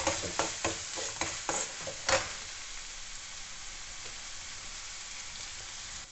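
Steel ladle stirring and scraping finely chopped onion, ginger and garlic frying in mustard oil in a pan, over a steady sizzle of frying. The scraping strokes stop about two seconds in, leaving only the sizzle.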